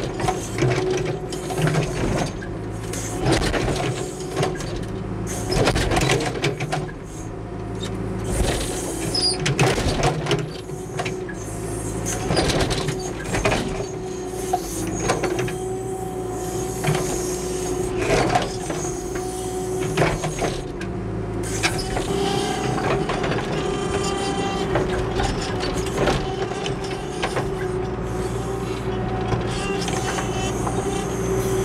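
John Deere 310SE backhoe's diesel engine running steadily under load as the bucket chews through the roots of a large maple stump. Repeated sharp cracks and knocks come from the bucket striking and breaking roots and wood.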